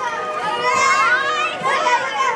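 A group of children chattering and calling out over one another, many high-pitched voices at once.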